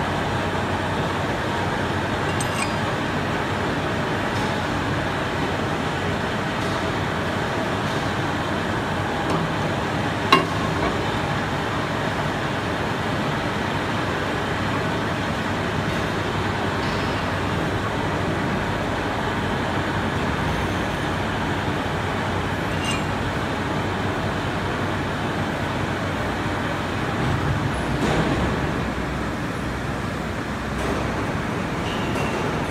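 Steady workshop background noise with no distinct tone. About a third of the way in comes one sharp metallic clink, and there are a few faint ticks, as steel die rings are handled and fitted onto the ram extruder's die head.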